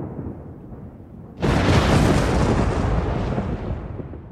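Thunder sound effect: a low rumble fades, then about one and a half seconds in a sudden loud crack rolls on and slowly dies away.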